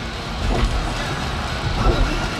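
Road noise inside a car driving on a wet road in heavy rain: a low rumble with a steady hiss over it.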